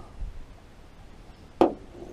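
A single short, sharp knock about one and a half seconds in, against quiet background.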